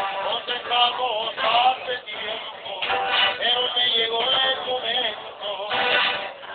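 A Mexican trio performing live: male voices singing a slow song over strummed acoustic guitar and accordion.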